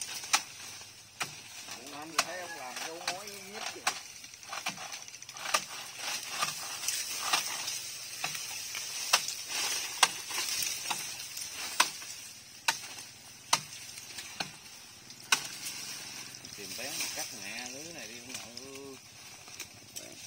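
Twigs and dry brush snapping and crackling in sharp, irregular cracks as branches and bamboo debris are hauled and pulled apart by hand, over a steady high hiss.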